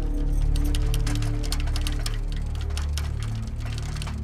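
Background music from the drama's score, with long sustained low notes that shift in pitch, over many short light clicks.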